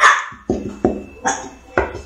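A metal tube cake pan knocked again and again against the sink edge, about five sharp knocks with a short ring after each, the first the loudest, as the cocoa powder dusting it is shaken loose and spread.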